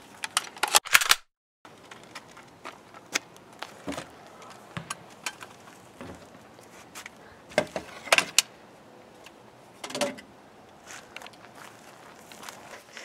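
Plastic airsoft guns being set down on and lifted off a plastic wheelie-bin lid: scattered short clacks and knocks, with a few louder clusters.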